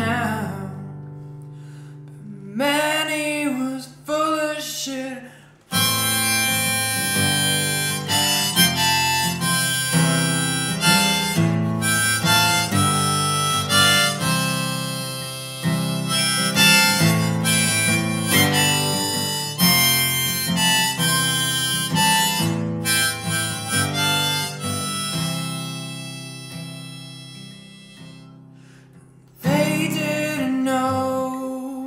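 Harmonica in a neck holder playing an instrumental break over a strummed acoustic guitar, coming in fully about six seconds in and thinning out near the end.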